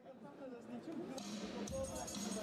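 Quiet room sound of a large hall: indistinct voices with faint music, starting almost silent and growing gradually louder.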